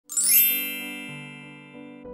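Intro music: a bright, sparkling chime at the start that rings away over about a second, over soft held keyboard notes that change twice.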